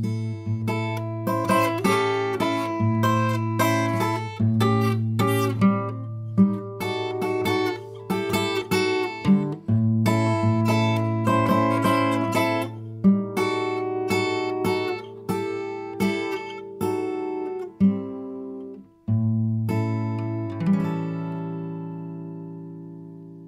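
Solo acoustic guitar playing a blues instrumental break: picked notes over a held bass line, ending on a chord left to ring out.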